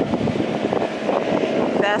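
A small motorboat's engine running under throttle as the boat comes up onto plane, a steady drone mixed with gusty wind on the microphone.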